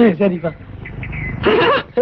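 Film dialogue: a voice speaks in two short bursts, with a brief quieter stretch of low rumble between them.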